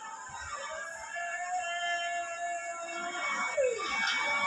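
A rooster crowing: one long held call that swoops down in pitch near the end.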